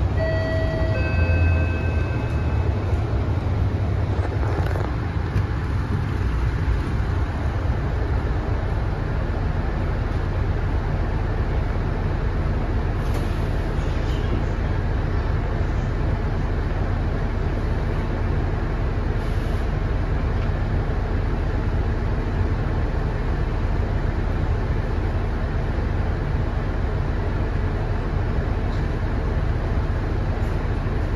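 Cabin noise inside a Mercedes-Benz O530 Citaro single-deck bus: steady diesel engine and road noise, with a steady low hum from about ten seconds in as it waits close behind another bus. A brief electronic chime of a few notes sounds in the first two seconds.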